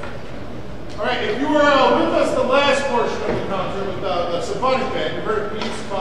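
A man speaking in a large, echoing hall, starting about a second in after a steady hiss of room noise.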